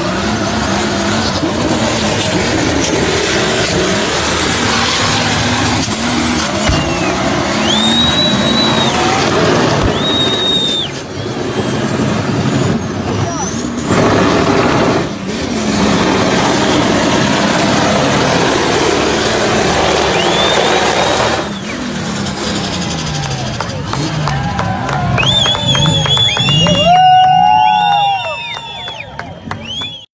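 Omega's compound-turbocharged 4.1-litre straight-six running at high revs through a smoky burnout, with tyres spinning on the pavement. Near the end it is blipped in a quick series of revs that each rise, hold briefly at the top and fall.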